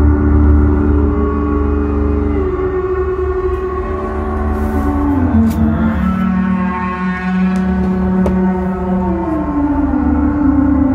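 Soma Pipe played into its mouthpiece on the Orpheus algorithm: a sustained, gong-like resonant drone over a deep hum, its pitch stepping and gliding to new notes about two and a half seconds in, again about five seconds in and near the end. A few faint clicks sound in the middle.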